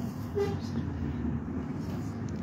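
Steady low drone of a bus engine heard from inside the bus, with faint voices over it.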